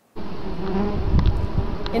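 Wasps buzzing close to the microphone around their paper nest, over a low rumble. The buzzing starts suddenly just after the beginning and keeps wavering in pitch.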